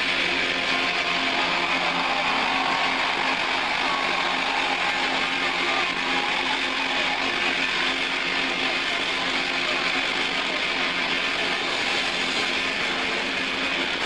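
Steady wall of distorted electric guitar noise and feedback from a live rock band at the close of a song, held at an even loudness, with crowd noise mixed in.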